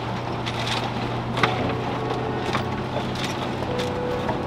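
A 4WD's engine running steadily as it drives along an overgrown track, heard from inside the cab, with a few short, sharp scrapes of scrub branches against the windscreen and bonnet.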